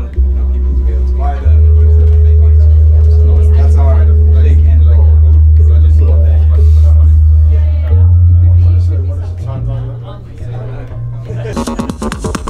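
Korg Berlin Phase5 electro-acoustic synthesizer, whose notes come from physically vibrating resonator arms, playing deep bass notes. One note is held steady for about six seconds, then a few higher notes step upward and fade near the end.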